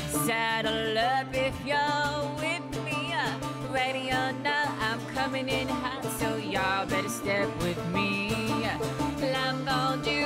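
Live acoustic pop-country song: a woman sings wavering, held vocal lines over acoustic guitar and banjo.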